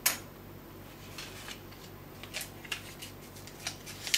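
A pen set down on a hard tabletop with one sharp click, followed by a scatter of light clicks and short paper rustles as a small slip of paper is picked up and folded.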